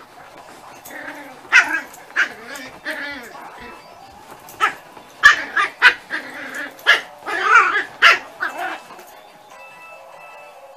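Dogs barking and yipping at play: about a dozen short, sharp barks in irregular bursts, starting a second or so in and stopping near the end.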